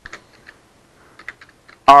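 Computer keyboard typing: scattered single keystrokes, then a quick run of several about a second in.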